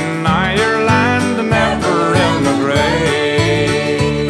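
Instrumental passage of an Irish country song with no vocals: a full band with strummed guitar and a steady beat, and a lead melody that slides up and down in pitch.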